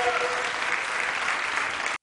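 Dancers and a studio audience applauding, steady and dense, as a last faint held note of the music dies away just after the start. The clapping cuts off suddenly at the end.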